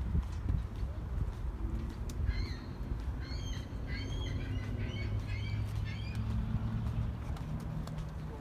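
A small bird chirping, a quick series of short high notes that starts about two seconds in and stops about two seconds before the end, over a low steady hum and a low rumble.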